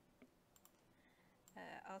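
A few faint computer-mouse clicks in the first second, over near-silent room tone. A woman's voice starts speaking near the end.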